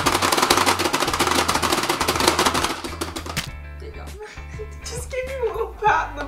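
Two players rapidly mashing the plastic buttons of a Pie Face Showdown game, a dense run of clicks that stops about three and a half seconds in as the round is decided.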